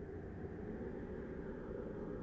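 A low, noisy rumble from a trailer soundtrack, without a clear tune, rising gradually in level and then holding steady under the title cards.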